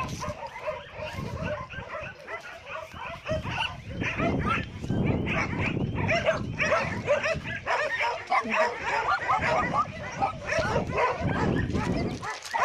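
Several dogs barking and yipping, with some whining, in short overlapping calls throughout.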